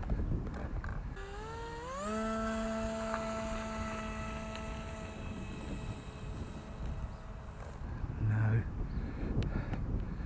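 Small brushless electric motor on a foam RC glider spinning a three-bladed pusher prop: a whine that starts about a second in, rises in pitch as it spools up, then holds steady for several seconds before dying away. The plane is stuck on the grass with not enough grunt to take off.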